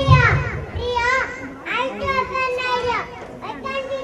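Two young children speaking into handheld microphones, their high voices amplified, in short phrases.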